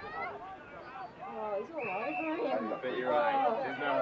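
Crowd chatter: several people talking over one another, no single voice clear, getting louder about halfway through.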